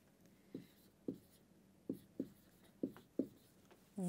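Felt-tip marker writing on a whiteboard: about six short, faint strokes with gaps between them.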